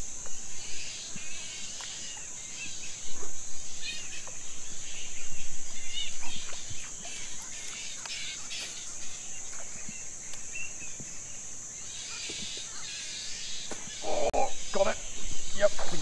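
Mangrove ambience: a steady high-pitched insect drone with scattered bird calls. A man's voice comes in near the end.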